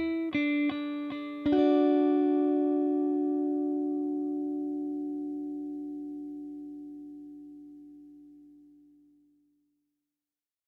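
Ending of an instrumental rock track. An electric guitar strikes a few short chords, then a final chord in D about a second and a half in that rings out, slowly fading to silence near the end.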